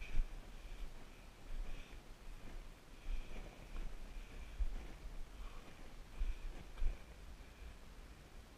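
Low, uneven rumbling of movement and wind on a body-worn camera's microphone, with irregular bumps as a hiker scrambles over rock.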